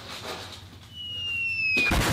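Falling-bomb whistle sound effect, a thin tone gliding downward, cut off just before the end by a loud explosion.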